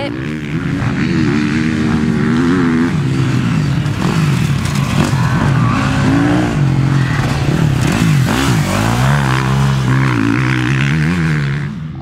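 Motocross bike engine revving up and down as it is ridden around a dirt track, the pitch rising and falling again and again with throttle and gear changes; it cuts off at the very end.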